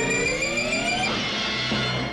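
Cartoon sci-fi sound effect of a flying saucer opening: several electronic tones rise together for about a second, then settle into a steadier hum.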